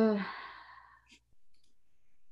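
A woman's voiced "äh" falling in pitch and trailing off into a breathy sigh, followed by a few faint clicks.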